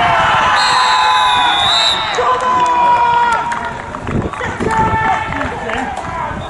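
Referee's whistle blown in one long blast of about a second and a half for full time, over the shouts of players and spectators.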